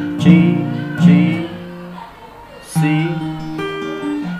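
Capoed steel-string acoustic guitar playing chords, each struck and left to ring: a G twice, about a second apart, then a C near the end.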